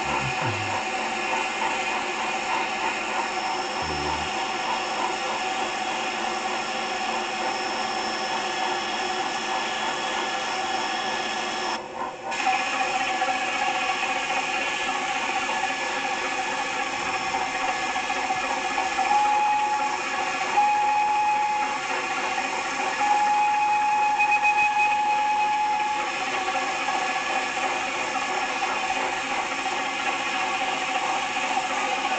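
Small geared electric motor of a toy Thomas train running, a steady whir with rapid clicking from its gears. The sound briefly drops out about twelve seconds in, and a steady high tone comes and goes in short stretches in the second half.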